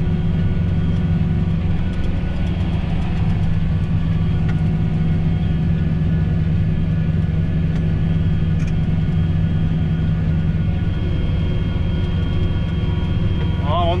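John Deere 8330 tractor's six-cylinder diesel running steadily under load while pulling a seed drill, heard inside the cab as an even drone with a faint steady whine above it.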